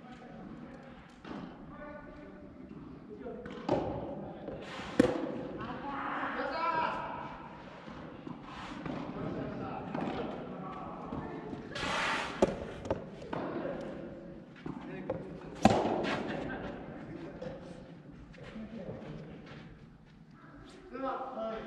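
Soft tennis rally: a rubber soft tennis ball struck by rackets in sharp, separate hits several seconds apart, with players' calls and shouts between the shots, in a large indoor hall.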